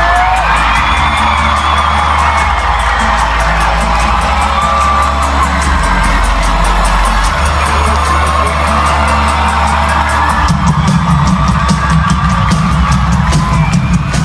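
Live band music in a concert arena, sustained low notes building under a whooping, cheering crowd; a pulsing beat thickens the low end about ten seconds in.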